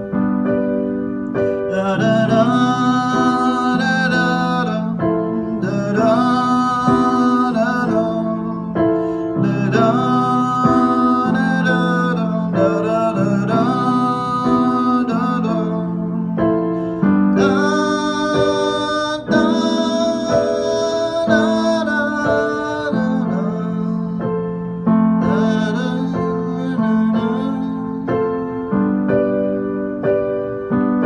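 Electric keyboard with a piano sound playing an instrumental break in a slow song: steady chords that change every second or two, with a melody line above them.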